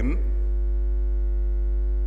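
Steady low electrical mains hum with a few fainter steady higher tones over it, an unbroken drone in the sound system.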